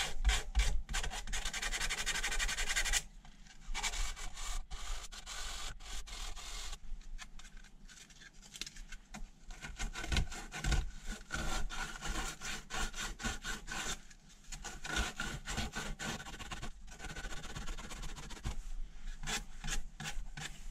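Sandpaper rubbed by hand back and forth over the end of a worn BMX peg, smoothing off the sharp edges left by grinding it down. Fast, even strokes for the first three seconds or so, then shorter, quieter runs of strokes with brief pauses.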